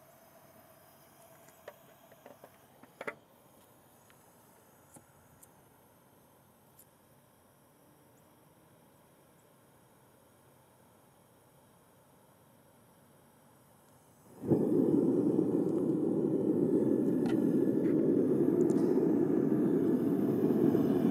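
A few faint clicks, then about two-thirds of the way through a propane furnace burner lights suddenly and runs with a steady rushing noise.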